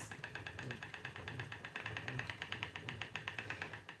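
Spinning wheel turning steadily while flax is spun, heard as a faint, rapid, even ticking from the wheel's moving parts.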